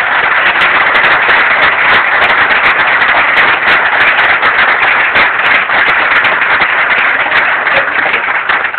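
Loud, dense applause from an audience, many hands clapping at once.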